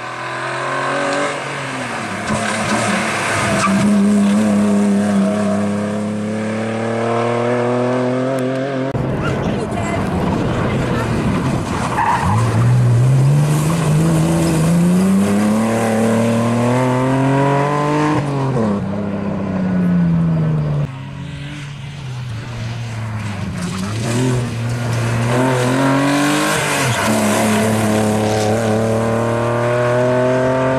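BMW E36 engine revving hard, its pitch climbing and falling again and again through gear changes and lifts of the throttle, with one long climb about halfway through. Tyres squeal as the car slides through the turns.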